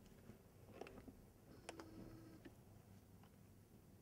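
Near silence: room tone with a few faint clicks and small handling sounds, about one, two and two and a half seconds in.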